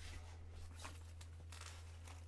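Faint rustling and scraping of a goalie leg pad's synthetic cover and straps as it is handled and bent, over a steady low hum.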